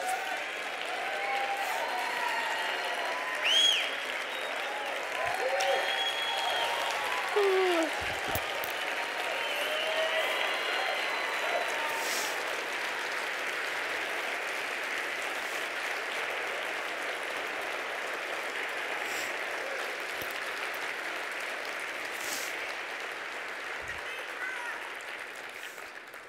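Audience applauding steadily, with voices calling out and cheering over the clapping in the first half, the applause easing slightly near the end.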